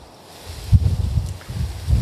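Wind buffeting the microphone: a low, gusting rumble that starts about half a second in and comes and goes in loud bursts.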